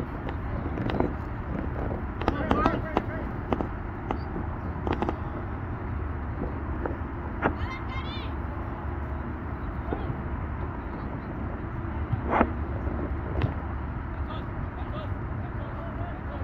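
Scattered distant shouts and calls of players and spectators across a soccer field, over a steady low rumble.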